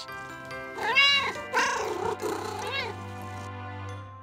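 A cat meowing twice, a short meow that rises and falls about a second in, then a longer, wavering one, over soft background music.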